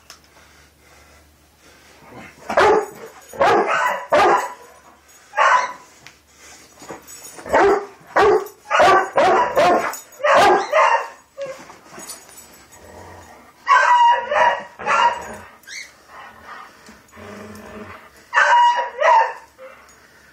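Dog barking in four bursts of calls with short pauses between, during a tug-of-war over a stick.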